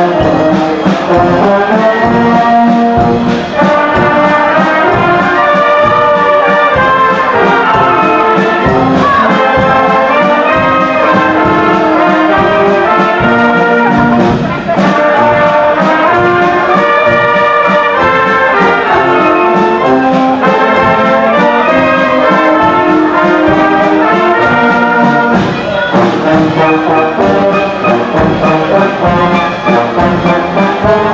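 A brass band playing a lively tune loudly, with trumpets and trombones over a steady beat.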